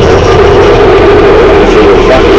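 Dense, very loud sound inside a moving bus, overloading the microphone: the bus's own sound system playing electronic music, mixed with the bus running.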